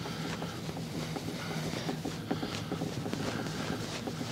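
Microfiber cloth with T-Cut rubbing back and forth on an acrylic caravan window to polish out a minor scratch, a soft, steady scrubbing, with a faint low hum underneath.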